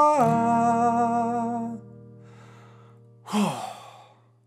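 A man's sung final note over a ringing acoustic guitar chord. The voice slides down in pitch just after the start, and the voice and chord fade out within about two seconds. Near the end comes a short, loud, breathy sigh that falls in pitch.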